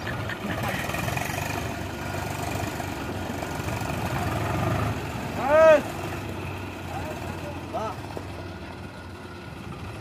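Tractor diesel engines running steadily at low revs. A loud, drawn-out human shout rises and falls about halfway through, and a shorter call follows near the end.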